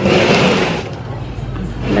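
A brief rustling, scraping noise lasting about a second, as a hand works at the potting mix and leaves of a potted rubber plant. A lower steady background follows.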